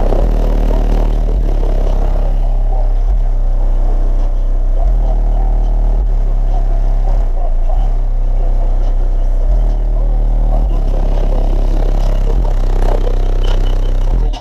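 Very loud deep bass notes from a high-powered car-audio system, played inside the truck cab. Held low notes shift in pitch every second or two without a break.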